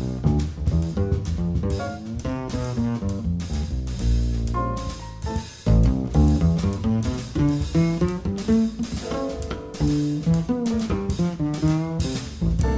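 Jazz trio playing: double bass, piano and drum kit, with a busy run of pitched notes over the bass and light percussion strokes throughout.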